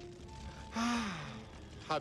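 A voice lets out a short breathy gasp with falling pitch, about a second in; another voice starts at the very end.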